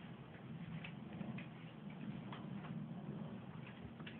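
Faint, irregularly spaced light clicks and knocks over a low steady hum.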